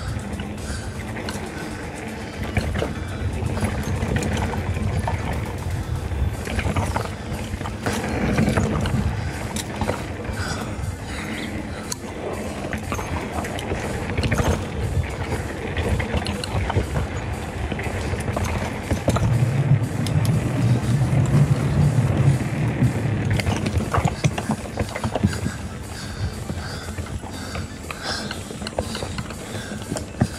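Devinci Atlas Carbon mountain bike ridden fast along a forest dirt trail: tyres rolling and crunching over dirt and roots, chain and frame rattling over bumps, wind on the mic. From about 19 to 23 seconds in, the tyres drum over the slats of a wooden boardwalk in a steady low hum.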